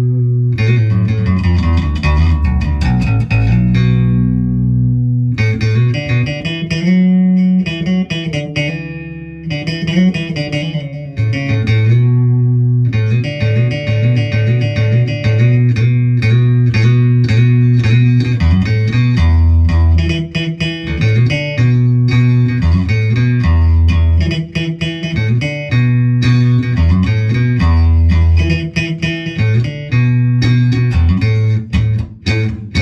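Yamaha BB434 electric bass played solo through a Boss Katana 210 bass amp: a run of plucked bass lines with some long-held, ringing low notes and a few short pauses.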